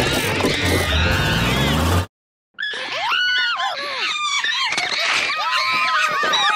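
Shrill, chimp-like screeching and chattering of a cartoon grasshopper creature, made from chimpanzee and monkey calls. The first two seconds are a dense clip with a deep rumble under it; after a brief gap, a run of shrieks that slide up and down and warbling chatter follows.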